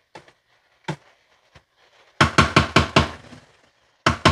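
Spatula stirring food in a skillet and knocking against the pan. There are a few light clicks, then about two seconds in a quick run of around six sharp knocks, the loudest part.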